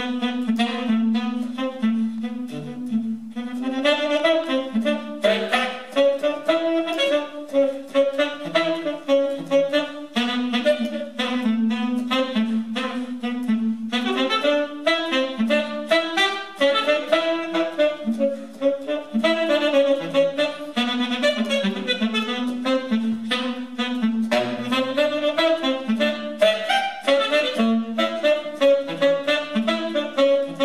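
Tenor saxophone playing a fast improvised jazz solo in quick, continuous runs of notes, with drums accompanying underneath.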